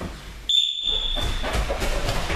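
A single steady, high-pitched start signal sounds for about a second, beginning half a second in. Then come the thuds and scuffs of several people setting off running barefoot across the mats.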